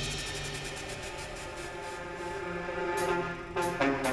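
Electronic dance backing track in a quiet breakdown with the drum kit silent: sustained synth tones, then a few short stabs near the end that lead back into the full track.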